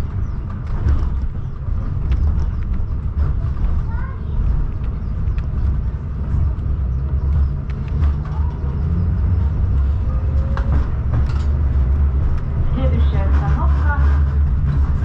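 KTM-19 tram running along the line, heard from inside the car: a steady low rumble of motors and wheels on the rails, with scattered clicks and knocks.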